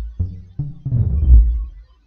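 Deep synth bass from the ZynAddSubFX instrument in LMMS, played as about three held notes. The last note turns brighter before it stops just before the end.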